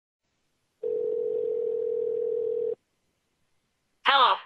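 Telephone ringback tone, the ring a caller hears on the line while waiting for an answer: one steady tone lasting about two seconds, starting about a second in.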